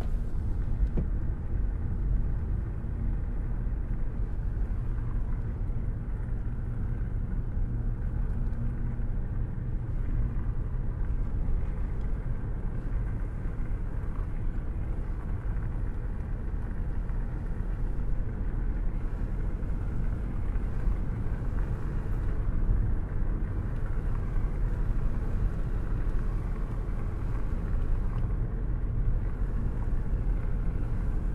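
A car driving steadily along a rough, winding road: a continuous low rumble of engine and tyre noise.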